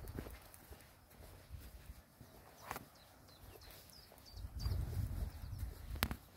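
Footsteps on a soft dirt footpath, irregular steps, with low rumbling gusts of wind on the microphone growing louder about two-thirds of the way in, and a few faint high chirps.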